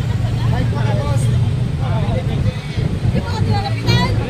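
Steady low rumble of city street traffic, with indistinct voices chatting among the crowd.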